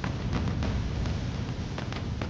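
A low, steady rumbling drone of background score, with a few faint clicks over it.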